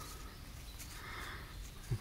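Faint scratchy rubbing of gloved fingers working soil off a small freshly dug button, with a few light gritty ticks.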